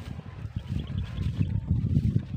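Wind buffeting the microphone in an open field, a low irregular rumble, with a faint rapid high chirping for under a second about half a second in.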